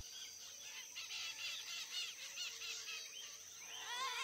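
Faint bird chirping: many short chirps in quick succession, over a steady high-pitched insect drone.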